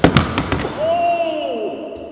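A skateboard landing on a smooth concrete floor: a loud slap of deck and wheels as the skater comes down on it, a few quick clacks, then the wheels rolling, with a long rising-and-falling vocal "oh" over it.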